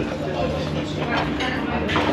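Indistinct talking of several people in a busy restaurant, with a steady low hum underneath.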